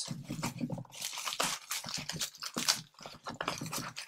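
Plastic bubble wrap being handled and pulled out from among plastic paint pots, crinkling and crackling irregularly.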